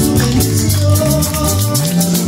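Live band playing an instrumental passage of an upbeat Latin-style Christian song: electronic keyboard over a stepping bass line, with a shaker keeping a quick, steady beat.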